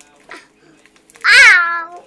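A cat meowing once, loudly: one drawn-out meow starting a little past a second in, rising briefly and then sliding down in pitch.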